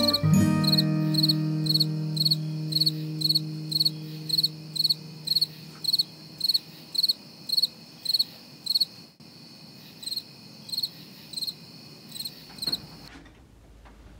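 A cricket chirping in a steady rhythm, about two chirps a second, stopping suddenly about a second before the end. The last chord of background music fades out under it over the first few seconds.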